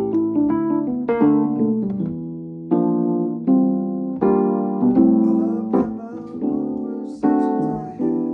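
Digital piano playing an instrumental passage of struck chords, each one ringing and fading before the next, with a few stronger accents.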